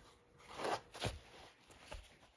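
Handling noise of a cast copper bar and leather welding gloves: two short rough scrapes and rustles, about half a second and one second in, as the bar is moved on the belt of a belt sander that is not running.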